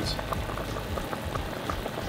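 A pot of soup simmering, the broth bubbling with many small pops.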